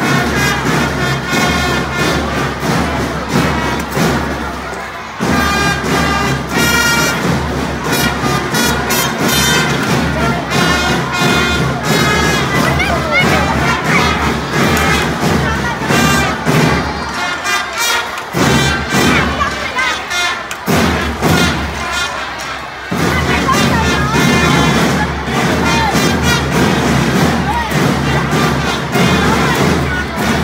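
A children's drum-and-trumpet band playing: trumpets over a steady snare-drum beat, with voices mixed in.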